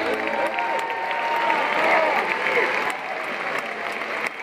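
Concert audience applauding and cheering, with voices whooping, as the song's last sustained notes cut off at the start.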